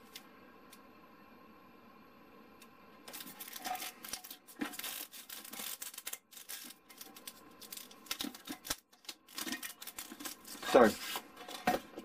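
Thin XPS foam underlay sheet rubbing and scraping against a coffee jar as it is handled and worked off the jar. The noises are irregular and scratchy and begin about three seconds in, after a quiet start.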